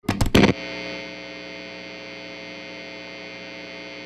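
Intro sting: a few quick loud hits, then a steady, distorted humming drone of many held tones that holds evenly.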